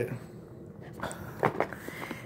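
Faint handling noise from a small product box being moved about: a few soft taps and rustles, mostly about a second in.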